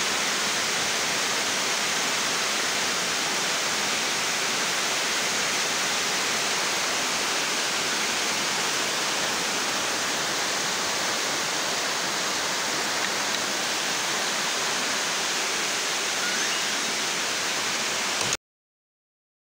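Rain falling steadily: a constant, even hiss that does not let up.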